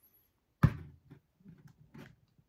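A single sharp knock about two thirds of a second in, followed by a few faint short handling sounds, as a fashion doll and its accessories are handled.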